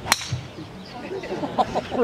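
Titanium driver striking a golf ball teed up high: one sharp, loud crack about a tenth of a second in.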